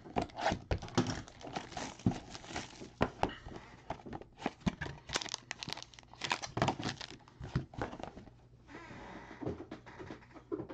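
Cardboard trading-card hobby box and its packaging handled and opened by hand: irregular crinkling and rustling with many sharp clicks and snaps, easing into a softer rustle near the end.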